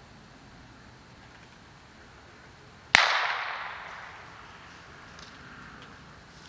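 A single gunshot about halfway through, sharp and loud, its echo dying away over a second or more. It is a shot fired from the field to mark a throw for a retrieving dog.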